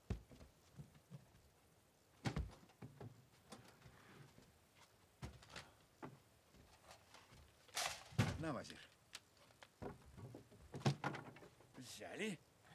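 Cases and boxes being lifted and set down on the wooden bed of an old truck: about five separate thuds and knocks a few seconds apart, with a brief voice sound just after eight seconds in.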